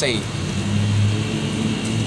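A motor vehicle's engine running nearby: a steady low hum that comes in about half a second in.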